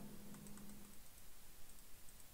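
Faint, sparse clicks from computer input at the desk, over low room tone.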